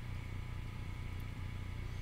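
Steady low hum of background room noise, with no distinct events.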